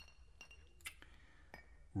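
A few faint, scattered clinks in a quiet pause, the sharpest a little under a second in, over a low background hum.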